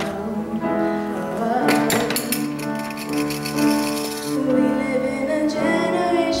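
A young woman singing a slow song solo into a handheld microphone, holding long notes.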